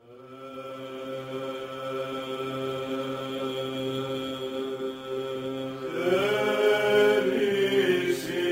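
Greek Orthodox Byzantine chant fading in: a steady held drone (ison) under sustained sung notes, with the chanted melody growing louder and moving about six seconds in.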